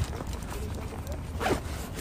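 A short zipper-like rasp about one and a half seconds in, over a steady low rumble.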